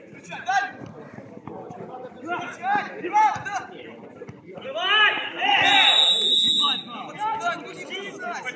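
Footballers shouting during play, then a referee's whistle blown once about five and a half seconds in, a steady high blast of about a second and a half that stops play for a foul.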